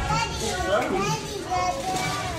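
Several young children's voices overlapping, chattering and calling out at play, with no clear words.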